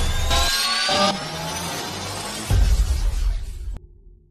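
Electronic logo sting: a rising whoosh with several tones gliding upward over a deep bass rumble, then a second deep bass hit about two and a half seconds in, cutting off shortly before the end.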